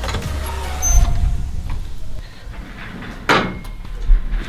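A door being pushed open and swinging shut: a low thud about a second in, then a sharp clack of the door closing near the end.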